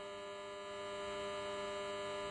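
A steady electrical hum, a low buzz with many evenly spaced overtones, holding level through the pause in speech.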